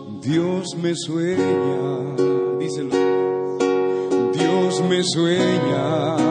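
Slow music carried by a strummed acoustic guitar, with chords struck at a steady pace over held tones.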